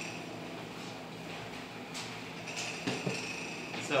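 A spatula stirring a raw ground-meat mixture in a glass bowl: quiet scraping with a few light clinks against the glass.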